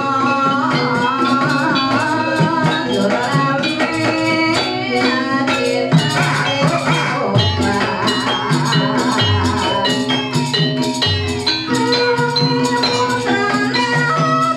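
Javanese gamelan music for an ebeg dance: bronze metallophones play a fast, ringing melody over drum strokes and a constant jingling rattle, with a deep low stroke every couple of seconds.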